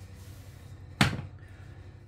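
A glass mixing bowl set down on a hard kitchen surface with a single sharp knock about a second in, over a faint steady hum.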